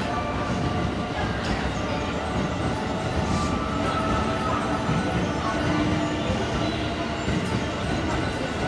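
JR West 281 series limited-express train passing at speed through an underground station: a steady rumble of wheels on rail, with thin steady squealing tones from the wheels, echoing in the enclosed platform.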